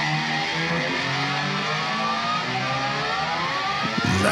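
Rock music intro: sustained low notes under several slowly rising, gliding tones, like an electric guitar swelling upward.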